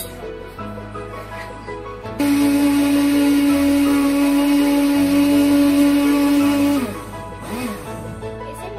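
Kitchen blender motor switched on about two seconds in, running steadily at high speed for about four and a half seconds, then falling in pitch as it is switched off and spins down. Background music plays throughout.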